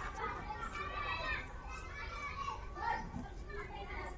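Several children's voices talking and calling out over one another during an outdoor game.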